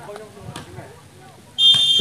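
A referee's whistle blown once near the end, a short, loud, shrill steady tone, in volleyball the signal that allows the next serve.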